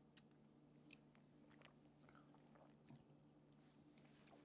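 Near silence: a few faint mouth clicks and sips from people tasting cocktails, the clearest just after the start, over a faint low steady room hum.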